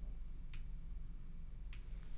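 Two faint short clicks about a second apart, over a low steady room hum.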